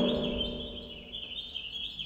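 Small birds chirping and twittering steadily as a background ambience track.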